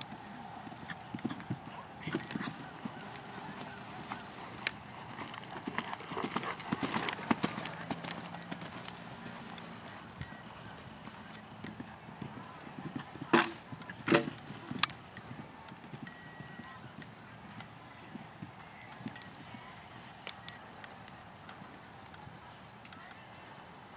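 Hoofbeats of a horse cantering on grass, a scatter of dull knocks, with two louder strikes about thirteen and fourteen seconds in.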